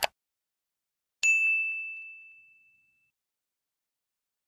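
Subscribe-button animation sound effect: a short mouse click at the very start, then a single bright bell ding about a second in that rings out and fades over about two seconds.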